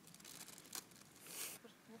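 Faint rustling with a few light clicks, and one short louder rustle about one and a half seconds in; a man's voice begins at the very end.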